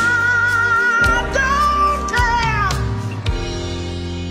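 A soul ballad band of keyboards, bass and drums playing its closing bars. A long lead note with vibrato is held over cymbal strikes, falling slides come about two seconds in, and a sustained chord fades slowly from about three seconds in.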